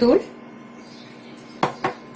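Two quick clinks, about a quarter second apart, of a small glass bowl tapped against the rim of a ceramic mixing bowl to knock out the last of the turmeric powder.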